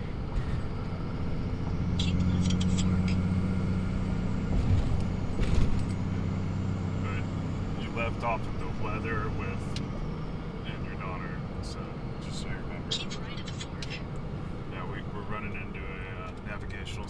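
Vehicle cabin noise while driving: a steady engine and road hum, strongest in the first half, with a thump about five and a half seconds in and a few light clicks. Faint, indistinct voice fragments come and go in the second half.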